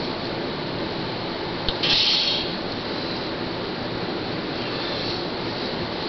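Bathroom sink tap running steadily into the basin, with a brief louder splash-like hiss about two seconds in.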